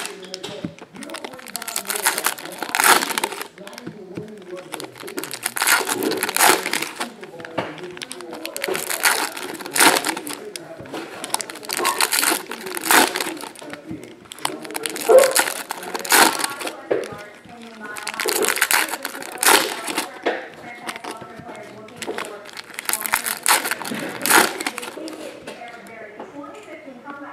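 Foil hockey-card pack wrappers crinkling and tearing open in repeated bursts every few seconds.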